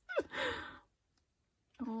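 A woman's short sigh, its pitch falling, lasting under a second, then a spoken "oh" beginning near the end.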